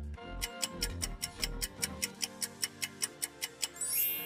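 Countdown-timer sound effect ticking fast, about six ticks a second, over background music, ending in a bright chime near the end.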